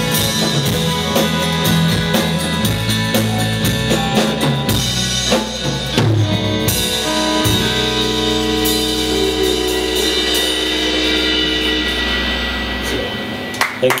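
Live indie band with drum kit and acoustic guitar playing the instrumental ending of a song: steady drum strokes over the first half, then a held chord that rings on and stops shortly before the end.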